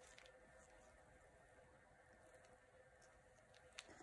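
Near silence: room tone, with one faint tick near the end.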